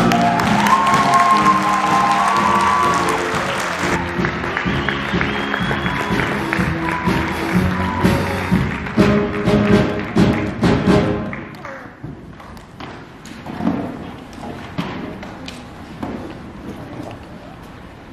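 Live pit band playing music with a steady stream of notes. The music dies away about eleven seconds in, leaving quieter scattered knocks and taps.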